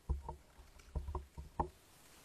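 Several soft, dull knocks and bumps, about six in two seconds: handling noise at a lectern close to its microphone.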